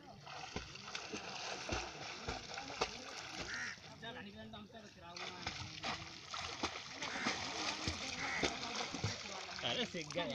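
River water splashing and sloshing around swimmers, with voices calling over it.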